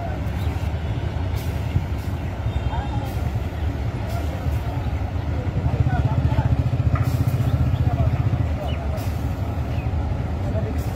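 Hyundai coach's diesel engine running under load as the bus pulls slowly off the ferry onto the steel landing ramp, its low rumble growing stronger for a few seconds past the middle. A few short sharp clicks sound over it.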